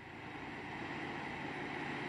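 Steady rushing background noise with no clear pitch, rising slightly in level.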